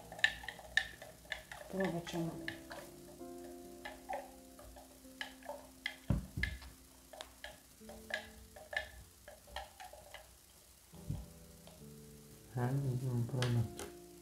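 A utensil clinking against the inside of a baby bottle as infant formula is stirred, in quick, irregular taps a few times a second, over soft background music.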